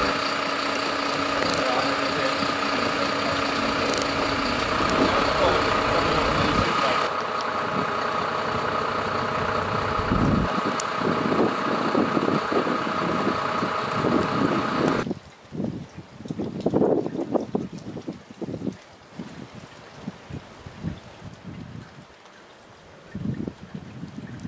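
A fire engine's engine idling steadily, a constant hum with several fixed pitches, which stops suddenly about fifteen seconds in. After that there is only wind buffeting the microphone in irregular gusts.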